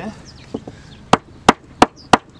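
A large hammer knocking a pallet-wood border plank into place. There are two light taps about half a second in, then, in the last second, hard sharp strikes at about three a second.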